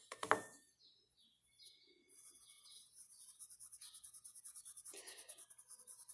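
Faint, quick rhythmic scratching of a paintbrush worked on cloth, about eight strokes a second, starting about two seconds in. Faint bird chirps come and go before it, and there is a short knock just after the start.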